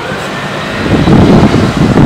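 Loud low rumbling noise that swells about a second in and holds.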